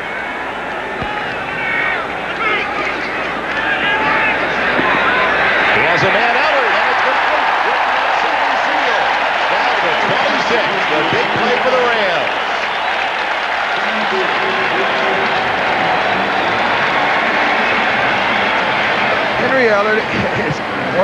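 Stadium crowd noise from a football crowd: a dense mass of many voices that swells about four seconds in and stays loud.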